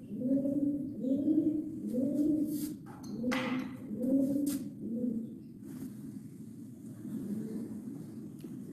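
A bird cooing: a low call that rises and falls, repeated a little under twice a second and fading after about five seconds, with a few short clicks and hisses in between.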